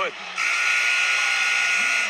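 Arena horn sounding one steady tone for about a second and a half, starting about half a second in, over crowd noise.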